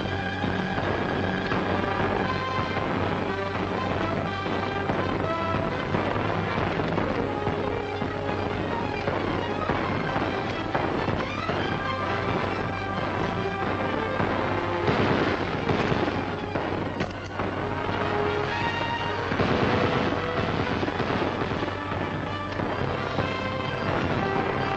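Rapid gunfire crackling over dramatic film score music, with two louder blasts in the second half, a few seconds apart.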